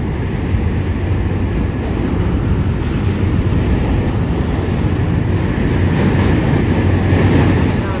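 Loud, steady rumble of passing vehicles, building slowly and peaking just before the end.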